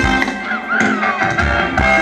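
Live Thai ramwong band music over a PA loudspeaker: a steady drum beat under guitar and other sustained instrument notes, with one note that slides up and back down about half a second in.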